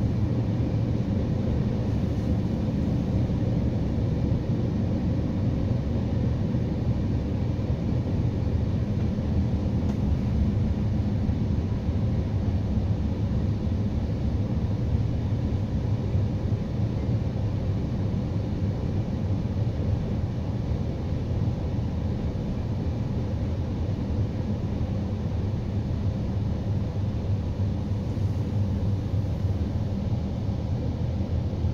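Steady low rumble of a Trenitalia regional passenger train running along the line, heard from inside the carriage.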